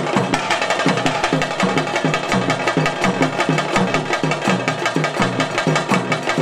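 Dolu drums beaten in a fast, steady ritual rhythm of about three to four strokes a second, with a dense clatter of higher percussion over the beat.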